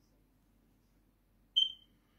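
A single short, high-pitched beep about one and a half seconds in, fading quickly, against near silence.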